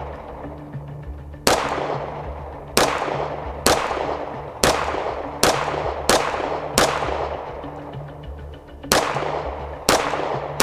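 Strike One ERGAL aluminium-framed semi-automatic pistol fired nine times at an uneven pace of about one shot a second, with a longer pause shortly before the end. Each shot is sharp and rings out briefly.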